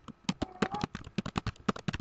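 Computer keyboard typing: a fast, uneven run of key clicks, about seven or eight a second.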